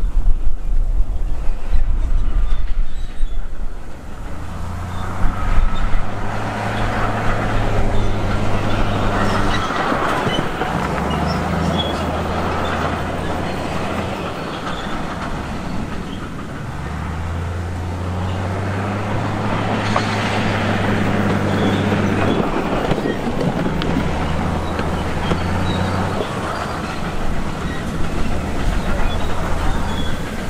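Wind rumbling on the microphone for the first few seconds, then the diesel engine of a Komatsu D58E crawler bulldozer running steadily, its low note stepping up and down in pitch several times.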